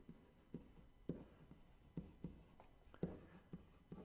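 Stylus writing on a tablet or touchscreen: faint, irregular taps and short scratches, about a dozen, as handwritten words are entered.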